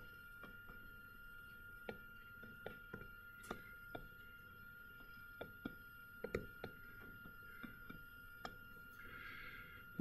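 Very quiet room with a steady faint high whine, broken by scattered soft clicks of a stylus tapping and drawing on a tablet screen.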